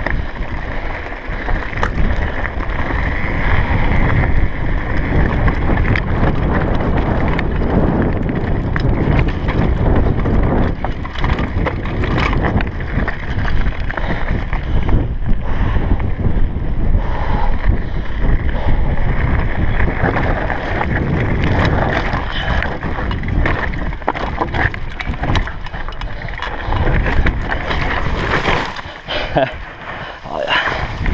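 Wind buffeting the action camera's microphone over the crunch of tyres on gravel and the rattle of a downhill mountain bike running fast down a gravel track. The noise drops and turns choppy near the end.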